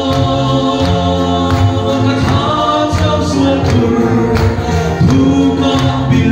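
A congregation singing a gospel hymn together, with a steady beat under the voices.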